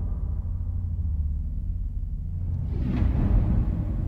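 Nature-documentary trailer soundtrack: a deep, sustained rumble of low music and sound design, with a rising whoosh about three seconds in.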